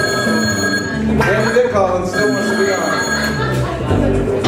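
A telephone ringing twice, each ring a steady high tone lasting a little over a second, with a short pause between.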